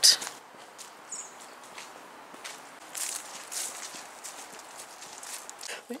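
Footsteps of a person walking on a woodland path strewn with fallen leaves, uneven steps over a faint outdoor hiss.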